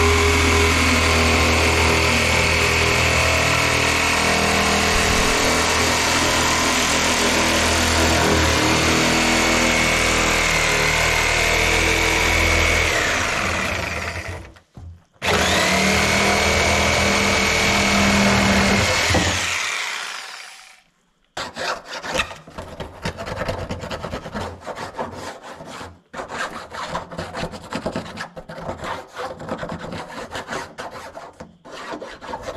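Corded DeWalt reciprocating saw cutting through the top of a plastic barrel, running steadily with a high whine for about fourteen seconds, stopping briefly, then running a few seconds more before winding down. After that, irregular scraping and rubbing of hands on the freshly cut plastic rim.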